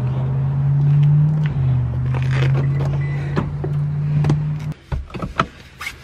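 Car engine running steadily, heard from inside the cabin, with a slight change in pitch about a second and a half in. It stops abruptly about three-quarters of the way through, followed by a few short clicks and knocks.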